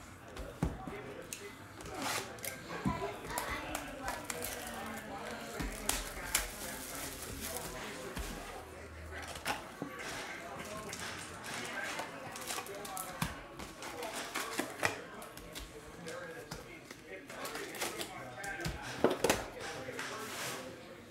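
Cardboard hobby box and foil-wrapped trading card packs being handled on a table: the box is opened and its packs are pulled out and stacked, with irregular taps, clicks and crinkles and a cluster of louder clicks near the end.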